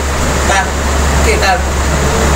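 A man speaking Bengali in short phrases, over a steady low hum.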